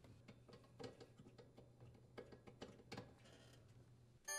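Near silence: faint room tone with a low hum and a few scattered faint clicks.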